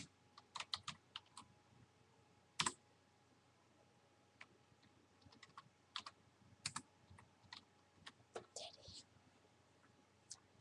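Computer keyboard keystrokes and clicks, sparse and irregular with pauses between, faint overall, with a brief soft rustle near the end.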